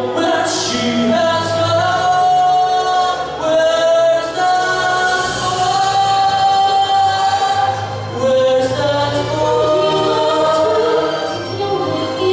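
A man singing long held notes of a ballad into a handheld microphone, amplified through a PA, over a musical accompaniment.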